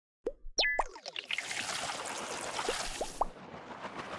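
Animated title-card sound effects: a few quick rising pops in the first second, then a soft airy whoosh with three more small rising blips near its end, fading out.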